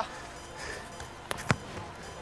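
A football being kicked: two sharp knocks about a quarter of a second apart, the second louder, over faint outdoor background.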